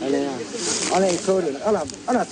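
A woman's voice speaking or calling out in a high pitch, with a brief hiss about half a second in.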